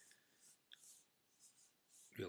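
Near silence: room tone during a pause in talk, with a few faint soft hisses.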